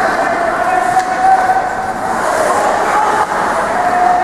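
Ice rink ambience during a hockey game: a steady, slightly wavering drone over a continuous rushing noise from the rink and the play on the ice.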